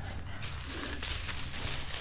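Faint rustling and crackling of dry pampas grass stalks as a rope is pulled out of the bundle, with a few light ticks.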